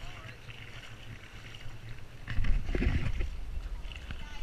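Water lapping and wind buffeting a camera held at the water's surface, with a louder bout of splashing and handling rumble about two and a half seconds in.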